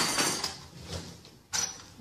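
A house door being unlatched and pulled open: a noisy burst right at the start that fades over about half a second, then another short noise about one and a half seconds in.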